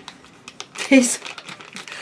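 Small clear plastic bag crinkling as it is handled, with a short vocal sound about a second in.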